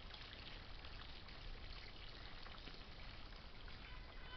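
Faint, steady outdoor background noise with no distinct source: a low, even hiss.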